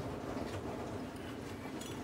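Faint, steady background hiss of room tone, with no distinct clinks or knocks.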